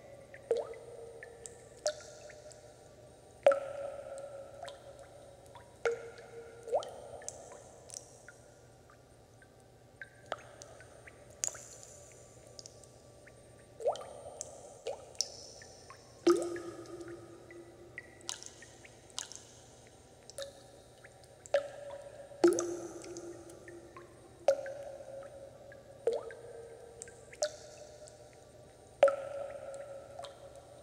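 Water dripping in slow, irregular drops, about one every second or two. Each drop is a sharp plink with a brief ringing tone, and the pitch changes from drop to drop.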